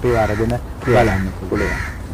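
A crow cawing twice, two harsh calls under a second apart, after a few words of a man's speech at the start.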